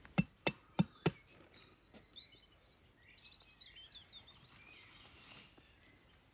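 A hatchet knocking a tarp stake into the forest floor, four sharp strikes about three a second, ending about a second in. Faint bird chirps follow.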